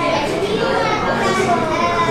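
Many people talking at once: the steady babble of a busy café, with no single voice standing out.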